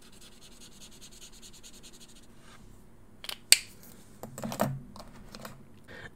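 Faber-Castell Pitt artist pen marker tip scrubbing quickly over sketchbook paper as a swatch is coloured in, stopping about two seconds in. Two sharp plastic clicks follow about three and a half seconds in as the marker is handled, then faint handling noise.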